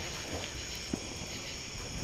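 Crickets chirring steadily, with one faint knock about a second in.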